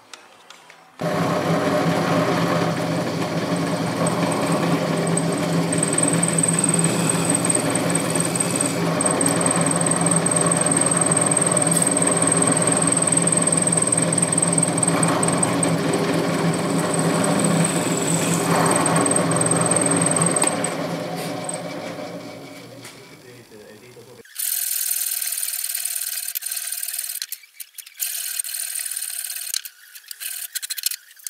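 Drill press motor running steadily with a high whine while drilling a small copper plate, then winding down about twenty seconds in. Near the end, a separate scraping, hissing sound in two stretches.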